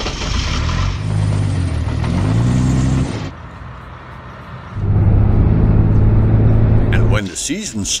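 Van Hool coach's old 5.7-litre diesel engine running on conventional diesel, heard at the exhaust pipe. The revs rise for about a second before a cut, and after a quieter stretch it runs loud and steady. The engine is a heavy smoker.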